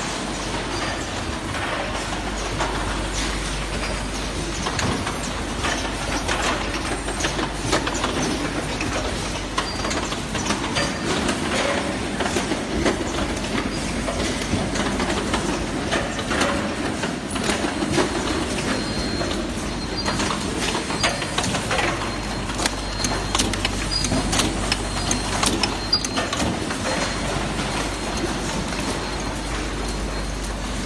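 Yogurt-cup case-packing line running: conveyors and plastic cups rattle steadily, with many sharp clicks from the robot packer and the cups, over a low machine hum.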